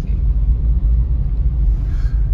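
Steady low rumble heard inside a small car's cabin as it drives slowly through a shallow river flowing over the road.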